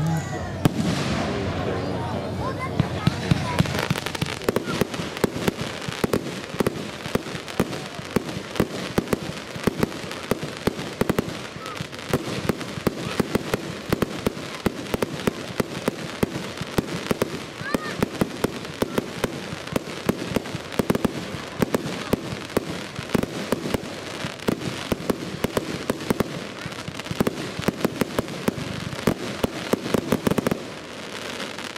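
Fireworks display: a rapid, continuous barrage of bangs and crackles as shells are launched and burst, with louder reports standing out every second or so.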